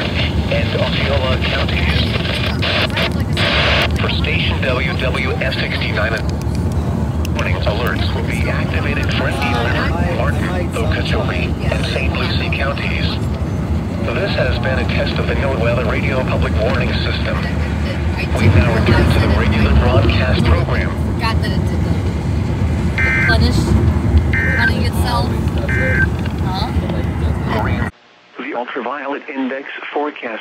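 Weather radio broadcast voice from a Midland handheld NOAA weather radio, hard to make out, over loud steady car road rumble. Three short beeps come about 23 to 26 seconds in. After a brief dropout near the end, a quieter, clearer radio voice follows.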